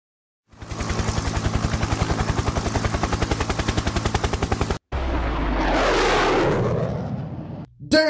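Sound-effect automatic gunfire: a rapid, even burst of shots lasting about four seconds that cuts off abruptly. It is followed by a low rumbling whoosh that swells and fades near the end.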